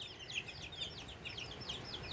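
Baby chicks peeping: a continuous stream of short, high, downward-sliding peeps, several a second.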